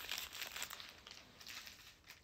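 Brown paper packaging rustling faintly as it is handled, dying away over the two seconds.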